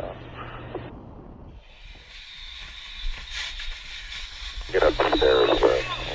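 Quiet radio-channel noise for about a second and a half, then a steady hiss with a thin, even high whine and a few faint clicks. A man starts talking about three-quarters of the way through.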